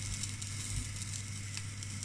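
Cabanos sausages sizzling steadily in a dry non-stick pan with no oil, over a steady low hum.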